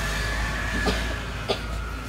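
Bus engine running at a low, steady idle, heard from inside the cabin, with two sharp clicks about a second and a second and a half in.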